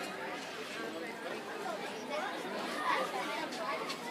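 Background chatter of many people talking at once, no single voice standing out.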